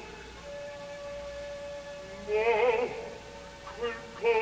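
Live opera performance recording in a quieter moment between sung phrases: one long steady held note from the orchestra, with a short sung phrase with vibrato that swoops upward about halfway through.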